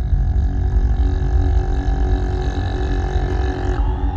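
Electronic music in a beatless stretch: a held synthesizer drone of several steady tones over a deep, rumbling bass. A higher tone in the drone drops out shortly before the end.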